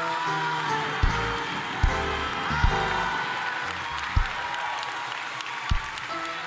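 Church band music under the preacher's pause: held keyboard chords with bass notes and five sharp drum hits spaced unevenly, over a busy background of congregation noise.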